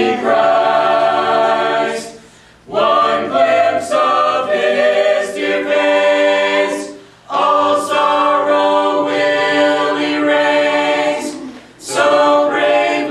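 A mixed a cappella ensemble of men's and women's voices singing a gospel song in harmony, unaccompanied. The chords are held in long phrases, broken by brief breaths about two and a half seconds in, about seven seconds in, and near the end.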